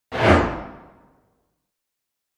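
A single whoosh sound effect that starts suddenly and fades out over about a second.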